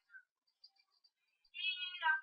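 A single drawn-out animal call with several tones, starting about one and a half seconds in and falling in pitch as it ends.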